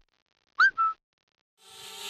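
A short two-note electronic chirp: a quick swooping note followed by a brief flat beep, with silence around it. Near the end a steady whirring hum fades in, like a drone's motors spinning up.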